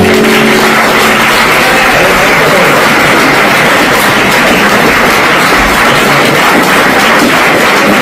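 Audience applauding steadily, loud and continuous, at the end of a live flamenco song, just after the last sung note dies away about half a second in.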